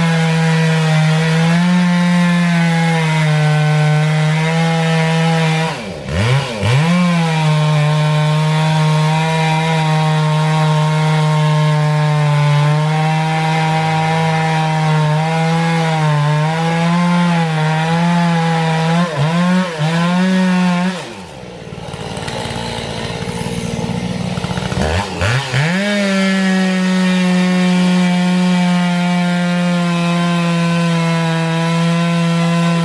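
Two-stroke chainsaw running at full throttle, cutting into a gum (eucalyptus) trunk, its engine note sagging and recovering as the chain bites. About six seconds in, the throttle drops off and revs straight back up. A little past two-thirds through, it falls to idle for about four seconds, then revs back up to cut again.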